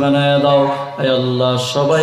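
A man chanting a sermon in a drawn-out, melodic singing voice into a microphone, holding long notes. He breaks off and starts a new phrase about a second in.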